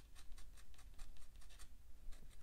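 Fine-tip Sharpie Pen scratching on watercolour paper in quick short strokes, about six a second.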